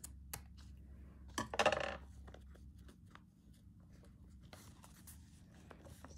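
Scissors snipping lace at the edge of a paper journal page: a few short, sharp clicks of the blades, with a brief louder sound about a second and a half in, then faint rustling of paper as the pages are handled.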